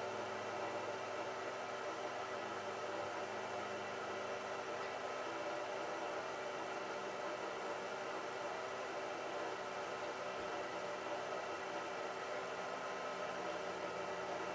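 Steady background hiss with a faint hum running through it, unchanging and without distinct events.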